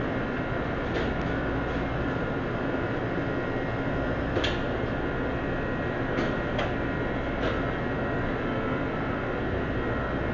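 Steady hum of restaurant kitchen equipment and ventilation, with a few faint clicks and clatters scattered through it.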